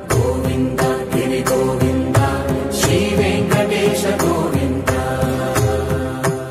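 Hindu devotional music: a chanted mantra-style melody over instruments, with a steady beat of percussion strokes.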